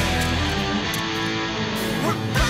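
Hard rock band music, with electric guitars holding long sustained chords.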